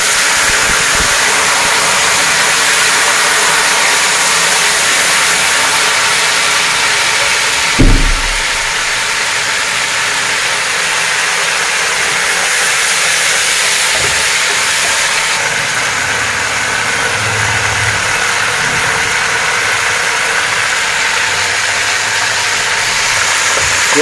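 Water sizzling and boiling in hot ghee with fried onions in an aluminium pot, a loud steady hiss. A wooden spoon knocks once against the pot about eight seconds in.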